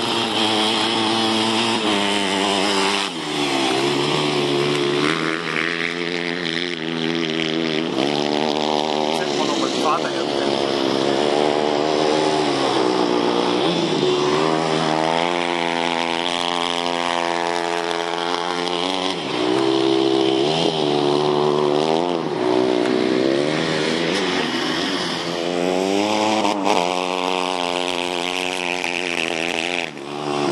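Go-kart engine revving up and down as the kart laps: the pitch climbs for a few seconds on each straight, then drops as it lifts off for the next corner, several times over.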